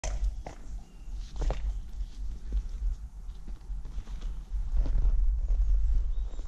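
A pony's hooves stepping at a walk on a concrete yard: a few separate hoof knocks over a steady low rumble.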